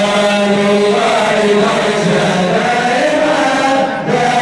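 Men chanting madih nabawi, Arabic devotional praise of the Prophet, into a microphone. A lead voice holds long, wavering notes while others chant along.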